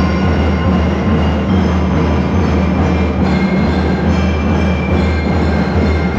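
A drum and lyre corps playing loud and dense: massed drums sounding continuously, with thin high bell-lyre notes over them.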